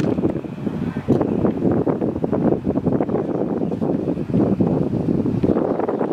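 Wind buffeting the microphone: a loud, uneven rushing noise that swells and dips throughout.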